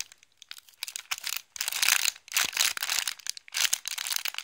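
Clear plastic wrapping bag crinkling in irregular bursts as a handmade sponge squishy is turned and squeezed inside it, starting about half a second in.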